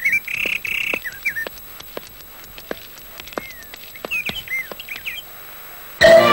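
Birds chirping in short, scattered calls that swoop up and down, with one longer call about half a second in and a burst of chirps near the end.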